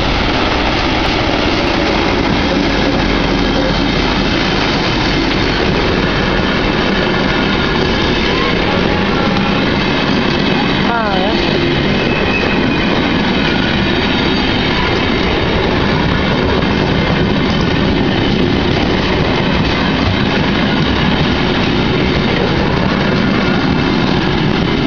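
A GR12W diesel-electric locomotive running close by, followed by its passenger coaches rolling past over the rails in a steady, loud rumble.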